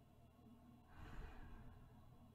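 One soft, slow breath from a woman about a second in, the even breathing of someone asleep, over a faint steady low hum.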